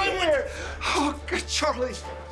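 A person's voice exclaiming with a falling pitch, then short emotional gasps, over quiet background music.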